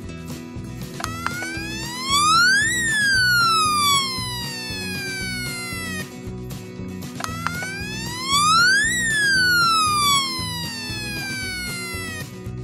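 Electronic siren of a Caillou toy fire truck, set off by its front button: two wails, each beginning with a click and a tone rising for about two seconds, then falling slowly for about three. Background music with a steady beat plays underneath.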